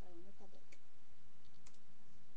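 A woman's voice singing unaccompanied into a headset microphone, holding a note that ends about half a second in, followed by a few faint, sharp clicks.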